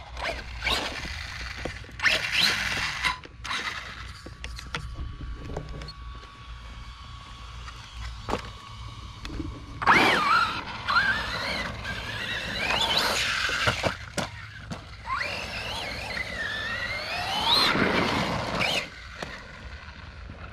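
Losi Baja Rey RC trophy truck's brushless motor on a 3S LiPo whining as it is throttled, its pitch sweeping up and down in bursts about ten seconds in and again a few seconds later.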